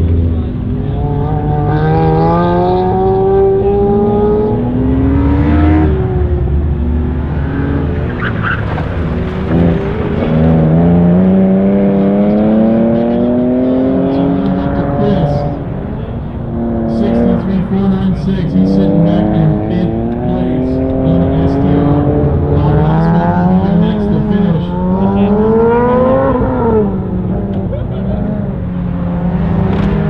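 Car engine running an autocross cone course, revving up and dropping back again and again as it accelerates between cones and lifts or shifts for the turns. The pitch climbs in sweeps of one to three seconds, each ending in a sudden drop.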